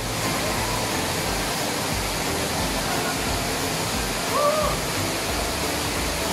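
Steady rush of a waterfall, an even wash of falling water. About four and a half seconds in comes a brief high call that rises and falls in pitch.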